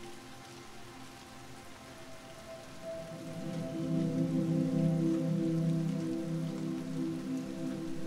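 Steady rain ambience under soft, sustained synth-pad chords, the chords swelling louder about three seconds in.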